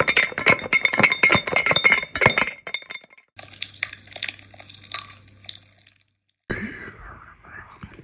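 Foley sound effects. First a fast, dense clinking clatter over a steady high whine, staged as a Lego figure tumbling in a dryer, stops about two and a half seconds in. After a short gap, irregular soft clicks and scrapes over a low steady hum are staged as a zombie eating brains; they end about six seconds in, and a new quieter effect begins shortly after.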